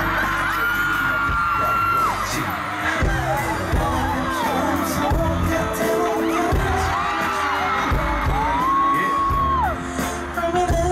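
Live pop music with a heavy bass under a concert crowd's high-pitched screams and cheers, several long held screams rising and falling.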